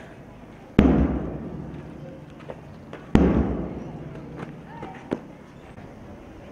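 Two loud booming thumps about two and a half seconds apart, each dying away over about a second, with a couple of fainter knocks between and after them.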